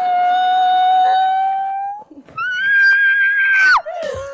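A long, high wailing cry held on one steady note for about two seconds. After a brief break, a second cry on a higher note is held, then falls away sharply near the end.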